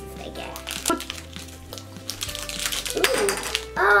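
Small plastic blind-bag packets being torn open and crinkled by hand, in scattered crackles and then a denser burst of crinkling about three seconds in, over light background music.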